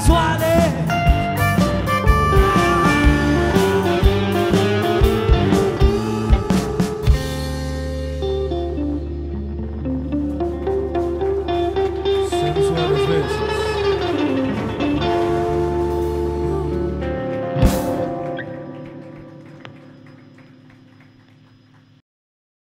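Live rock band with electric guitars, bass and drums. The drums stop about seven seconds in, and a guitar line wanders over a held bass note. A final struck chord near the end rings out and fades away as the song ends.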